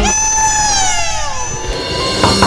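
A background-score transition sting: one pitched tone with overtones slides steadily downward for about a second and a half, then a short steady high note sounds near the end.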